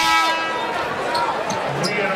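Basketball dribbled on a hardwood arena court, several short knocks in the second half, with brief high squeaks over the arena crowd's murmur.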